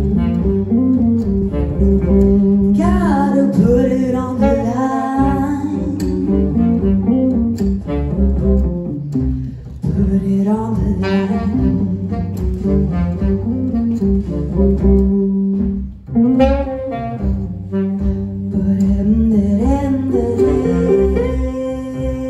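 Live band playing a soul-jazz song: drum kit, bass, guitar and saxophone, with a singer's voice over them. The loudness drops briefly about two-thirds of the way through.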